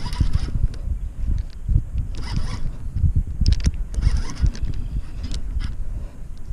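Baitcasting reel being cranked against a hooked fish in three short spells, each a raspy, zipper-like whir, with a few sharp clicks between them. A steady low rumble on the microphone runs underneath.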